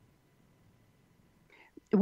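A pause in conversation: near silence for about a second and a half, then a faint breath and a voice starting to speak at the very end.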